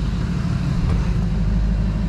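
Work van's engine idling steadily, a low rumble, with a light click about a second in.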